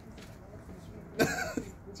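A single short cough a little over a second in, loud against a faint background.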